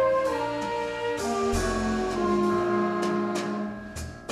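Jazz big band playing live: a flute line over sustained horn chords, with bass and drums. The band thins out and grows quieter near the end.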